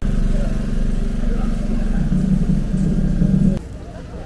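A small engine running steadily close to the microphone: a loud low hum with a rapid, even beat. It cuts off abruptly about three and a half seconds in.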